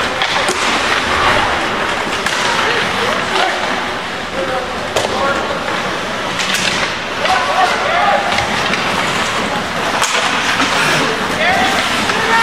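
Ice hockey play: skates scraping the ice and sharp clacks of sticks and puck, under voices from the stands and the ice.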